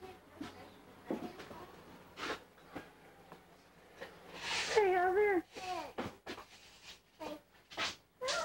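A drawn-out, wavering vocal call about four seconds in, lasting a little over a second, followed by shorter calls, with soft knocks and handling sounds before it.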